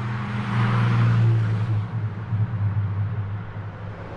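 A low, steady engine-like rumble with a rush of noise that swells about a second in and then fades away, like a motor vehicle passing.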